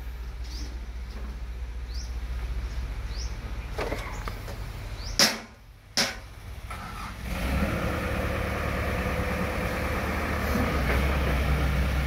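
Sumitomo FA S265 excavator's diesel engine running at a steady idle, briefly broken by two sharp clicks about five seconds in, then louder and steadier from about seven seconds on.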